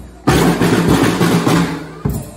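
Scout drum corps playing marching snare drums with sticks, backed by a bass drum. After a brief lull, the drumming comes back in loudly about a quarter second in as a dense run of beats, then slowly dies away near the end.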